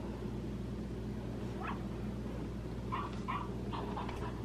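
A dog whimpering: one short rising whine about a second and a half in, then three short whines near the end, over a steady low hum.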